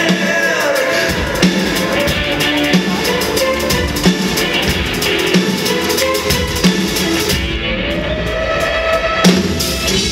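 Live pop-rock band playing, with a drum kit keeping a steady beat under electric guitar.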